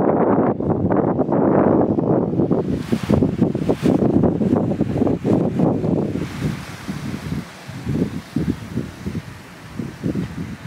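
Wind buffeting the camera microphone in uneven gusts, easing off in the second half.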